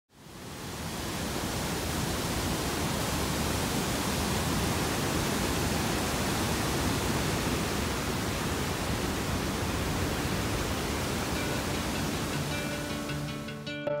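Steady rush of a large waterfall's white water, fading in at the start and cutting off suddenly near the end. Acoustic guitar music comes in over the last second or so.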